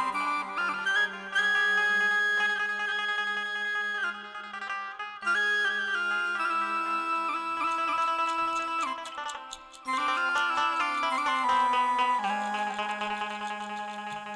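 Bengali Baul folk ensemble playing an instrumental passage: long held melody notes over a steady low drone, with plucked strings, in phrases that pause briefly twice.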